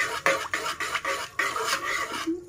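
Metal spatula scraping around an aluminium kadhai, stirring fennel seeds and cardamom pods in hot ghee: quick repeated scrapes, about three or four a second.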